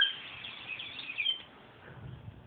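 Small red toy whistle blown in a high, warbling chirp. It starts sharply, glides up and down in pitch, and stops after about a second and a half.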